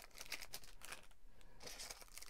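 Faint rustling and light scattered clicks of small items and packaging being handled inside a cardboard box.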